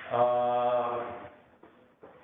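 A man's long, drawn-out hesitation 'uhh' held at one steady pitch for about a second, fading out into near quiet.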